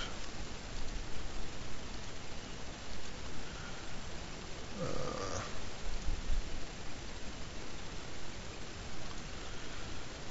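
Steady hiss of a microphone's background noise, with a brief faint hum of a man's voice about five seconds in.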